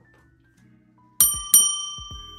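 Two bright bell-like dings about a third of a second apart, the second the louder, ringing on and slowly fading: a chime sound effect marking a transition.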